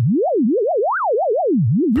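Pure sine tone from a Pure Data oscillator running on an Electrosmith patch.Init() module. Its pitch glides up and down in a quick zigzag, turning several times a second between a low hum and a high whistle, as random CV from a Qu-Bit Chance module drives it. The CV-to-pitch input is working as intended.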